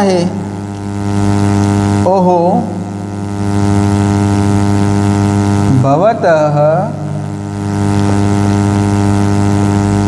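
A loud, steady electrical hum made of a low buzz with a stack of even overtones runs under everything. A man's voice speaks briefly twice over it, about two seconds in and again around six seconds.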